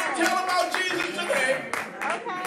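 Congregation clapping, irregular claps, with voices calling out over it.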